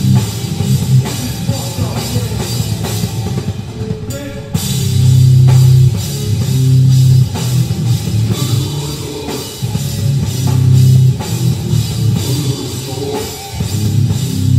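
Hardcore punk band playing live: distorted electric guitars, bass and drum kit. A brief break about four seconds in, then heavy held low chords over the drums.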